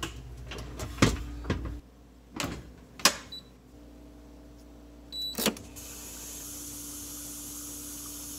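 A dishwasher being shut and started: a few knocks and clicks, two short electronic beeps from the control-panel buttons, then about five and a half seconds in its motor starts up, running with a steady hum and a hiss of water.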